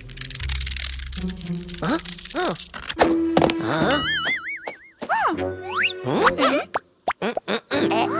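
Cartoon background music with comic sound effects: several quick springy pitch glides that rise and fall, and a wobbling high tone about four seconds in.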